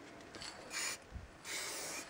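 Low-pressure Sigma Paint spray can hissing through a black cap with a black dot: a short burst just under a second in, then a longer spray of about half a second near the end, a dot and then a line being laid down in a cap test.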